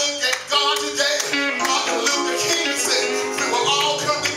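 A man's sung, chanted sermon delivery over church music, with held chords and steady percussion strokes.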